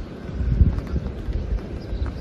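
Light rain falling, heard as a steady hiss, with a low rumbling thump about half a second in.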